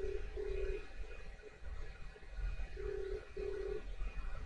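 Telephone ringback tone in the Australian double-ring pattern: two short beeps in quick succession, heard twice about three seconds apart, over a low rumble. It is the sign that the called number is ringing and has not yet been answered.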